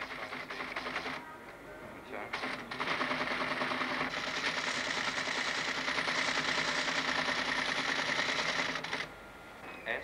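Teleprinter terminal clattering: a short burst of fast key and print clicks, then after a brief lull about seven seconds of continuous rapid, even rattle as it prints, over a steady motor hum, stopping abruptly about a second before the end.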